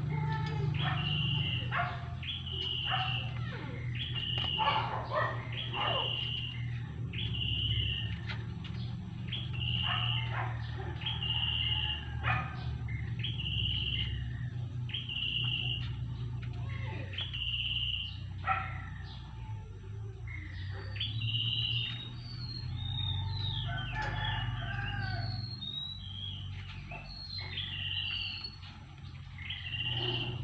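A bird calling a short high note over and over, about once every second or so, with quicker falling chirps from other birds joining in the last third, over a steady low rumble.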